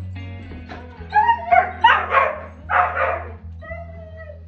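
Dogs whining and yipping in several loud bursts during an excited greeting, over background music with steady held low notes.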